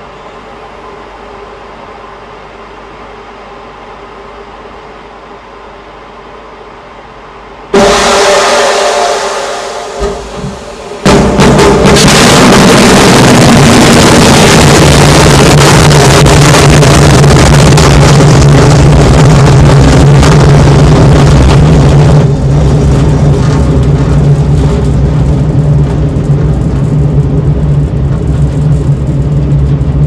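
Intercontinental ballistic missile launch: a steady low hum, then a sudden loud blast about eight seconds in that dies away, then a second sudden, very loud roar of the rocket motor that holds steady to the end.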